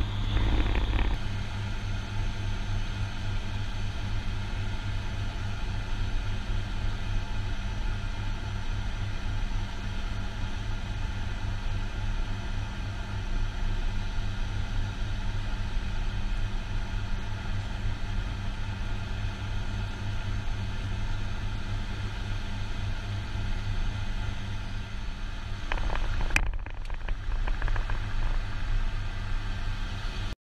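Steady engine drone heard from inside a moving vehicle's cabin, a constant low hum with fixed tones over it; the sound shifts briefly near the end.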